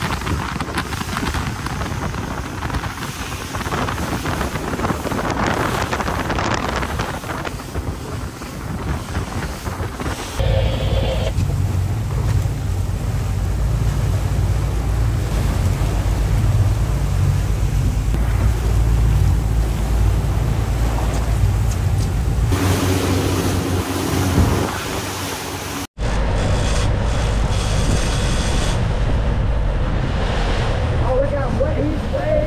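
Wind buffeting the microphone over the running noise of an offshore fishing boat and the sea around it. A heavy low rumble comes in suddenly about ten seconds in, and the sound cuts out for a moment near the end before returning.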